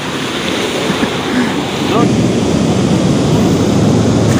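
Steady rush of muddy floodwater pouring through a dam's sluice gate and channels, a loud even wash of noise with no rhythm. A brief voice comes in about two seconds in.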